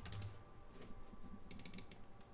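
Faint computer keyboard keystrokes: a couple of clicks at first, then a quick run of key clicks near the end as a command is typed and entered.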